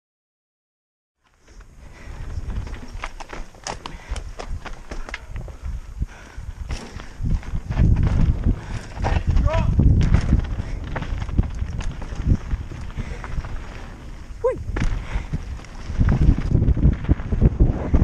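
Mountain bike ridden fast down a dirt trail, heard from a helmet camera: wind buffeting the microphone, tyres on loose dirt, and rattles and clicks from the bike over bumps. It starts suddenly after a second and a half of silence, gets louder around the middle and again near the end, with a couple of short squeaks.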